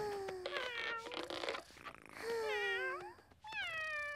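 Cartoon cat vocalising: three drawn-out, wavering meow-like calls, each under a second long.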